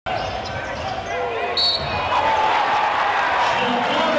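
A basketball being dribbled on a hardwood court, with short sneaker squeaks and the voices of players and crowd echoing in the gym. A brief high-pitched squeak comes about one and a half seconds in.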